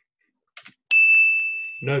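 A single bright bell ding about a second in, ringing on for nearly a second: the quiz's signal that a correct fact has scored a point.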